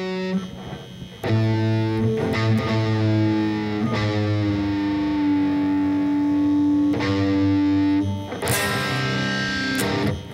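Distorted electric guitar: a low power chord is struck about a second in and left ringing for several seconds while a tuning peg is turned, one of its notes sliding slightly lower. A fresh strum comes near the end.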